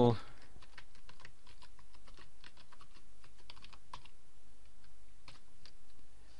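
Typing on a computer keyboard: a run of quick, irregular keystrokes that stops shortly before the end.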